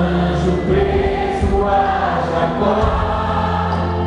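Many voices singing a Catholic worship song together over amplified music, the notes held and flowing on without a break.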